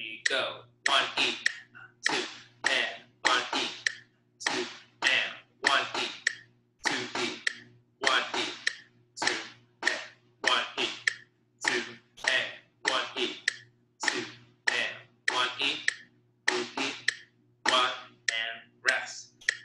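Snare drum struck with sticks, playing a sixteenth-note reading exercise: short groups of sharp strokes broken by rests, in a steady pulse.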